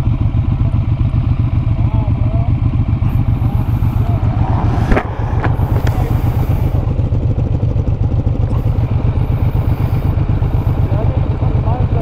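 Suzuki DR-Z400SM's carbureted single-cylinder engine idling steadily while the bike stands, with a sharp click about five seconds in.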